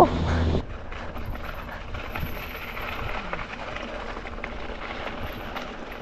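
Mountain bike rolling down a dirt singletrack: steady tyre-on-dirt noise with light rattles and ticks from the bike. A louder low rumble in the first half second then drops away.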